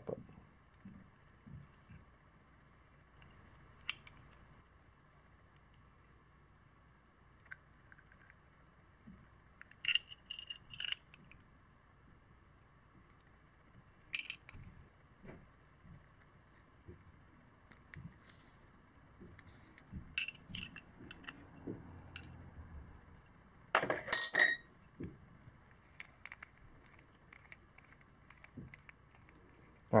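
Scattered metallic clinks and clicks of hand tools and small metal parts being handled on a workbench while a die stock threads a carburettor throttle elbow, with the loudest clatter a little before the end.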